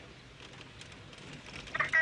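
Low running noise inside a moving car, then near the end a man's short high-pitched laugh.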